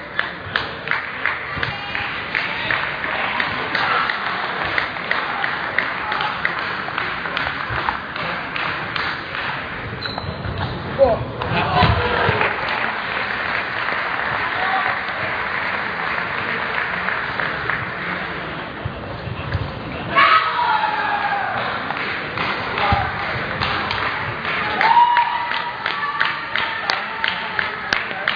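Table tennis rallies: the celluloid-type ball clicking off bats and table in quick alternation, about two hits a second, over a steady murmur of voices. A couple of loud shouts come about eleven and twenty seconds in.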